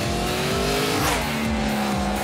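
Yamaha R1 sport bike's inline-four engine running at speed as the motorcycle goes by, with a rush of passing noise about a second in.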